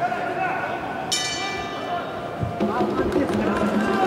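Boxing ring bell struck once about a second in, a bright ring that fades over about a second, marking the end of the round. Voices shout around it.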